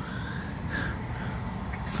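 Steady low rumble of distant city traffic, with a few faint, short bird chirps above it.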